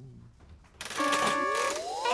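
Children's-TV sound effect: a hissing burst with a held buzzing tone, then several whistles gliding steeply upward.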